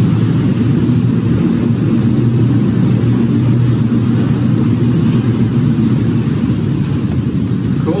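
Passenger elevator car rising up a deep shaft: a loud, steady low rumble with a hum in it from the moving cab. A short spoken word comes right at the end.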